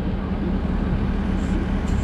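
Volvo EC380E excavator's diesel engine idling steadily.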